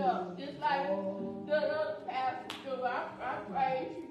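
A man's voice in a sung, chanted preaching cadence over steady held instrument chords, with one sharp clap or knock about two and a half seconds in.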